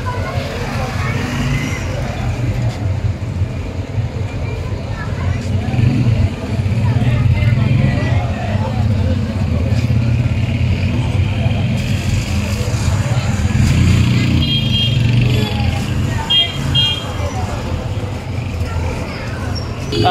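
Motorcycle engines running in a crowded street, with many men's voices talking over them. Twice past the middle come short high beeps.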